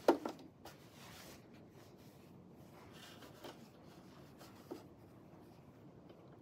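A sharp knock right at the start, then faint rustling and a few light clicks as fabric is slid across the coverstitch machine's bed and positioned under the presser foot. The machine is not sewing.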